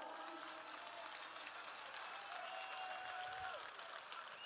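Faint, steady applause from a large crowd, heard at a distance, with a few thin drawn-out tones above it.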